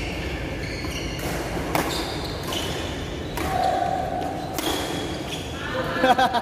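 Badminton rally in a large hall: several sharp racket strikes on the shuttlecock, each with a short ring, echoing off the hall walls. Voices come in near the end.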